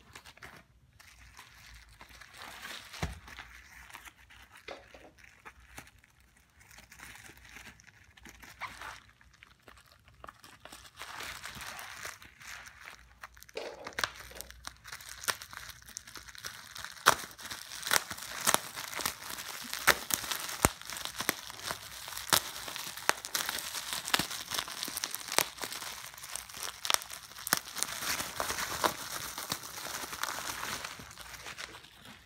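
Plastic bubble wrap crinkling as it is handled and pulled off a package. Fainter at first, it grows louder about halfway through, with many sharp crackles.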